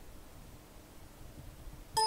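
Quiet room tone with a faint steady hum while a device programmer reads a PIC chip. At the very end an electronic beep starts sharply, marking that the chip read has finished.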